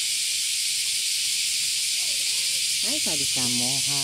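Cicadas shrilling in a steady, high, even hiss throughout. Near the end a woman's voice speaks over them.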